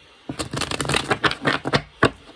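A tarot deck being shuffled by hand: a quick run of card flicks and slaps that starts a moment in and stops near the end, with one sharper tap as the deck is squared.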